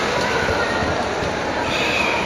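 Steady background din of a large, busy indoor sports hall, with a few faint brief high squeaks near the end.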